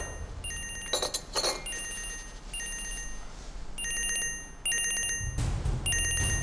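A mobile phone ringing: an electronic trilling ringtone in short repeated bursts, about six of them. Two sharp swishing hits sound about a second in.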